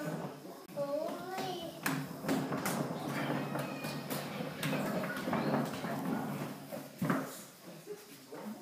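Small wheels of a child's skateboard rolling on a hardwood floor: a low rumble with irregular sharp clacks. A young child's vocal sounds come about half a second in.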